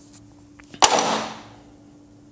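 A single sharp knock a little under a second in, followed by a short hiss that fades out over about half a second.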